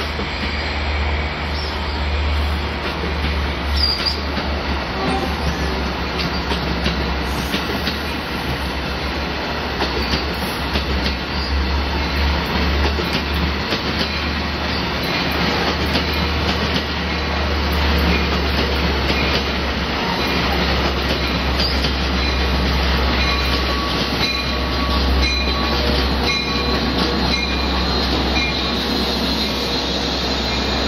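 Trains running past on steel rails: a steady low rumble of wheels with clatter and short, high wheel squeals, more of them in the second half.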